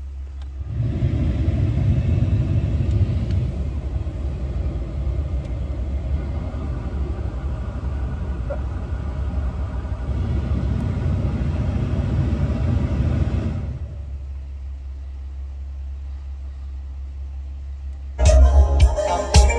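2013 Dodge Ram pickup's climate-control blower fan switched on at a high setting, air rushing from the dash vents from about a second in, easing a little midway and rising again before cutting off about 14 seconds in. A steady engine idle hums underneath throughout.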